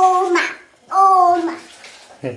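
A toddler's voice making short, held "ooh" sounds: two in quick succession, each about half a second long, at a fairly steady high pitch.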